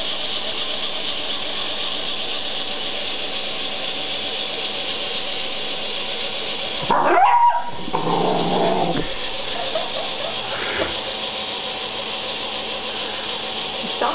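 A beagle gives one loud, pitched bark about seven seconds in, followed by a quieter, lower vocal sound, over a steady hiss.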